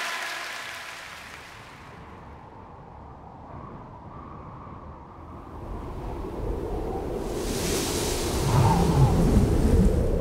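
Storm-like ambient sound effect: a low rushing noise that dies down, then swells again over the last few seconds. A brighter hiss sweeps in near the end over a deep rumble.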